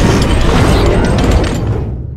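Loud cinematic impact sound effect: a sudden hit with a deep rumble that holds for about a second and a half, then fades away.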